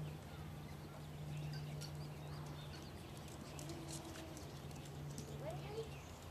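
Chihuahuas' claws clicking on a hard floor as the dogs move about, irregular light ticks over a steady low hum.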